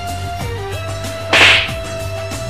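A single sharp slap about one and a half seconds in, the loudest sound here, over steady background music.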